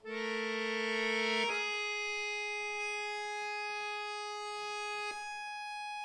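Solo accordion holding long sustained notes: a loud chord enters suddenly, narrows after about a second and a half to a steady held note with a high upper tone, and the lower note drops out about five seconds in, leaving only the high note held.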